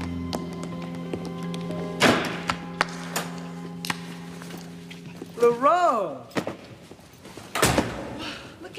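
Tap-shoe steps clicking over background music of held notes, with a loud stomp about two seconds in. A voice calls out once, its pitch rising and falling, and another loud thud comes near the end.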